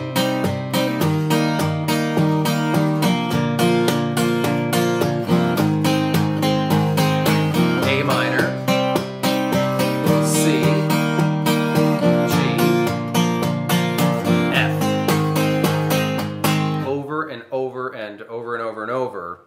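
Steel-string acoustic guitar with a capo at the third fret, strummed in a steady, even down-up pattern through an A minor, C, G, F chord progression. The strumming stops about a second before the end.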